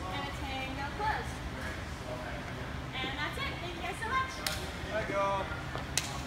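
Indistinct talking in the room over a steady low hum, with two sharp taps, one past the middle and one near the end.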